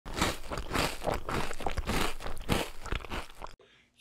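Crunching noise, like a bite into crunchy cereal, running as a dense irregular crackle and cutting off suddenly about three and a half seconds in.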